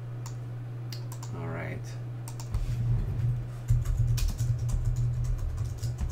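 Dice being handled and rolled on a tabletop. Scattered clicks come first, then from about two and a half seconds in a louder, dense run of clicks and knocks with low thumps on the table. A short murmur of a voice comes just over a second in.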